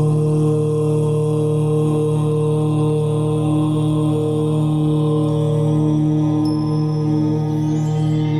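Background devotional music: a chanted "Om" held as one long, steady low drone.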